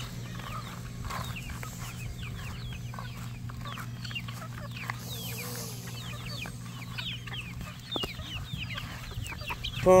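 A flock of free-ranging chickens clucking and chirping: many short, falling chirps, close together, over a steady low hum.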